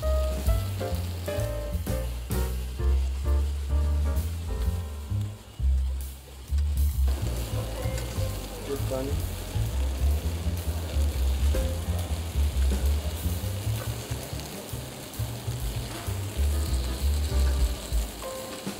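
Marinated chicken pieces sizzling steadily as they brown in a hot non-stick frying pan, being turned with metal tongs, with background music underneath.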